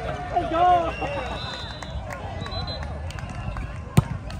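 Several people's voices calling out and talking, loudest in the first second. Near the end comes a single sharp smack, the loudest sound, typical of a volleyball being struck.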